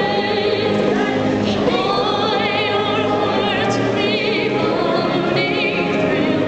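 A choir singing a slow piece, with a high voice's strong vibrato standing out above the others.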